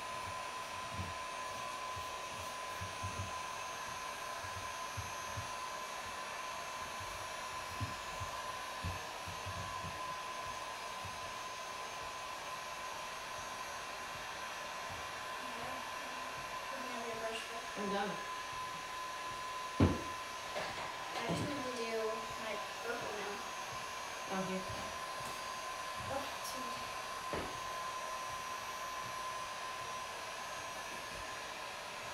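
Handheld electric heat gun blowing steadily, drying paint on a canvas, its air noise carrying a constant whine. One sharp tap sounds about twenty seconds in.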